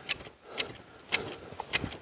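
Long-handled manual hedge shears snipping into a hornbeam hedge: about four sharp clicks of the two blades closing against each other, roughly half a second apart.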